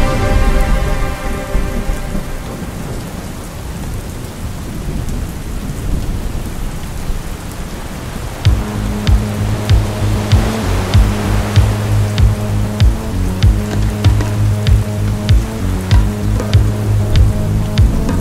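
Rain with a low rolling thunder rumble. About halfway through, a low synth drone with a quick pulsing beat comes in over the rain.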